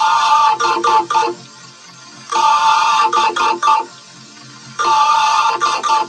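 An effect-processed Windows system sound played as a short, bright musical phrase that repeats about every two and a half seconds, with a quieter stretch between repeats.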